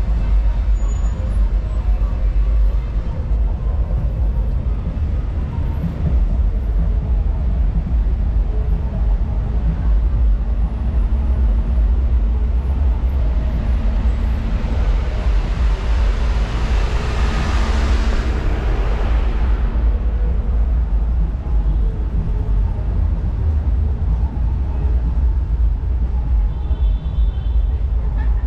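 Downtown street traffic going by: a steady low rumble of cars and road noise, with one vehicle passing close about two-thirds of the way through, a hiss that swells and fades over a few seconds.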